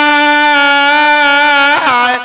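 A man singing a Bhawaiya folk song with no accompaniment, holding one long steady note with a slight waver, which bends and drops away near the end.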